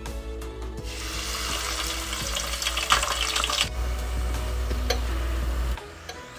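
Raw potato fries in a wire basket lowered into hot oil, sizzling and bubbling vigorously. The sizzle starts about a second in, is strongest for the next few seconds, then eases a little. Background music plays underneath.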